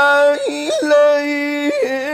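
A man's voice chanting Quranic recitation in melodic tajwid style, holding one long note with quick ornamental turns in pitch about half a second in and again just before the end.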